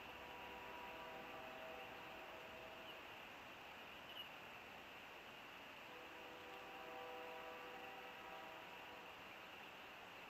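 A faint, distant horn sounds twice, several steady tones held together as a chord, each blast about three seconds long, over a steady background hiss.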